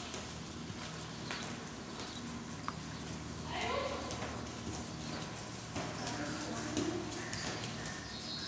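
Hoofbeats of several ponies walking on the sand footing of a covered riding arena.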